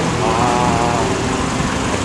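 City street traffic: car engines running with a steady wash of road noise.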